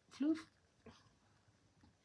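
A woman says one short word, "floof", with a bending pitch; after that there is only quiet room tone.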